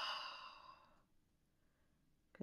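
A woman's long, breathy exhale, a sigh that fades away within the first second.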